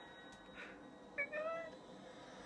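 A single short, high-pitched squeaky call that rises and then falls, a little past the middle, over faint background sound.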